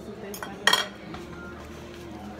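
Metal fork clinking on a ceramic plate as it is set down: a light tap, then a louder clink with a short ring about two-thirds of a second in.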